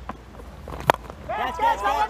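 A single sharp crack of a cricket bat striking the ball a little under a second in, over the low hum of a broadcast stadium feed. A raised voice follows from about a second and a half in.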